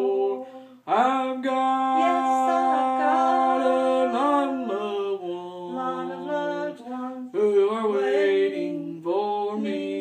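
A single voice singing a gospel song unaccompanied, holding long notes, with a short breath break about a second in.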